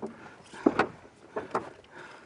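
A few soft knocks and handling noises as people shift about in an aluminium boat while holding a large catfish.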